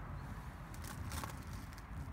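Quiet background: a low steady rumble with a few faint soft clicks or rustles.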